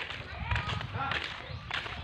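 Faint, indistinct voices of people talking, over a low, uneven rumble of background noise on the phone microphone.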